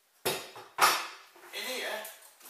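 Two sharp clattering knocks of kit being handled, about half a second apart, followed by a patch of rustling and handling noise as a fabric pouch is lifted.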